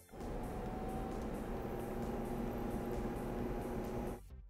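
Induction cooktop running, giving a steady even hiss with a few faint steady tones.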